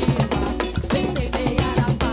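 A bloco afro percussion band playing a dense, driving drum rhythm on large bass drums, with guitar and other pitched parts over it.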